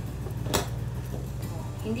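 A single sharp click about half a second in as the stainless-steel lid and plunger of a borosilicate glass French press are set onto the carafe; the lid is a loose, not snug, fit.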